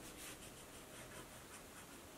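Faint scratching of a pencil point on a paper journal page in short repeated strokes as letters are sketched.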